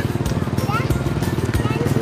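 An engine running steadily with an even pulse, with people's voices in the background.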